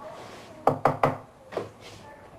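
Knuckles knocking: three quick sharp raps, then two more a moment later.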